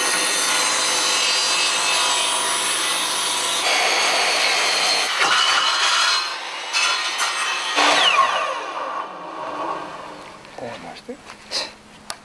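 Wood being sawn: a steady rasping that runs for about nine seconds with a few short breaks, then dies away, leaving a few light knocks near the end.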